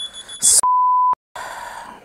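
A mobile phone's high electronic ring, which stops about half a second in. A short burst of noise follows, then a steady single-pitch bleep of about half a second, cut in with dead silence either side in the way a censor bleep covers a word.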